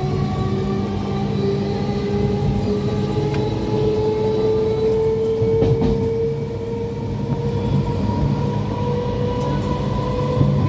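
Train running, heard from inside the carriage: a steady low rumble with a thin whine that slowly rises in pitch.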